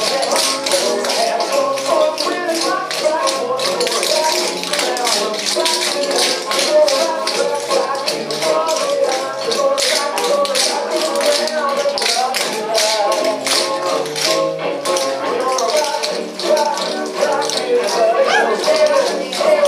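Many tap shoes striking a wooden floor in quick rhythmic patterns as a group dances in time to recorded swing music.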